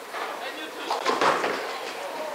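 Indistinct voices of people talking in a bowling alley, loudest about a second in.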